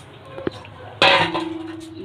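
Raw rice poured from a steel bowl into a dry metal karai, the grains hitting the pan all at once about a second in with a loud rush that dies away, after a light click. This is the start of dry-roasting the rice.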